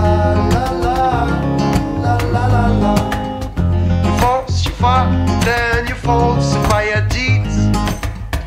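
Instrumental passage of a guitar-led folk-blues song: guitar over a steady low bass line, with a melody that bends and slides in pitch from about four seconds in.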